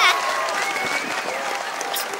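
Hands clapping in applause, a dense steady patter, with faint voices underneath.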